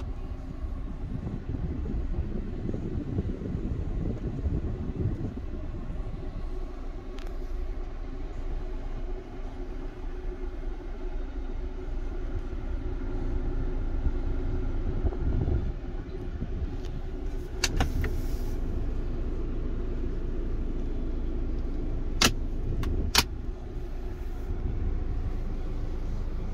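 Mercedes-Benz E250's 2.0-litre turbo engine idling, a steady low hum heard from inside the cabin, with a few sharp clicks in the second half.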